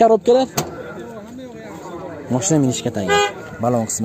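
People talking, with a short car horn toot about three seconds in.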